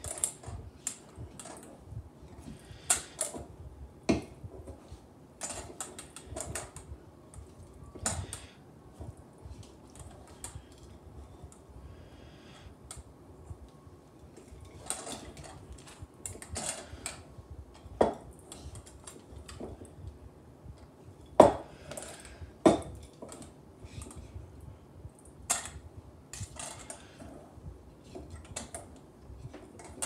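Hands kneading a sticky peanut butter dough in a stainless steel mixing bowl: irregular clicks and knocks against the metal bowl, with two sharper knocks a little past the middle.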